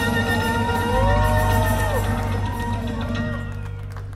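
Gypsy jazz band playing live, with clarinet, guitars and drum kit holding a long sustained chord that slowly fades. Several rising-and-falling whoops from the audience sound over it in the first half.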